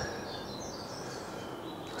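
Quiet outdoor background noise: a steady low hiss with a few faint high bird chirps in the first second.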